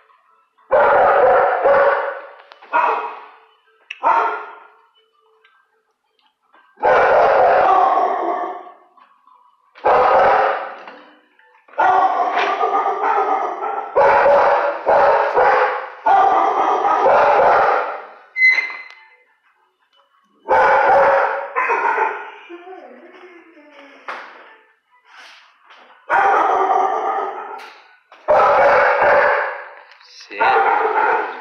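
A dog barking over and over in a shelter kennel: about a dozen loud, drawn-out barks with short pauses between them, each trailing off in the room's echo.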